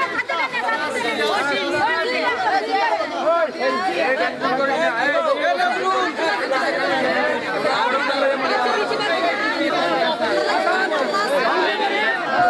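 A crowd of many voices talking over one another at once, a dense, continuous babble with no single speaker standing out.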